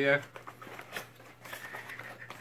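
Faint crinkling and light clicks of a small mailing package being handled and opened.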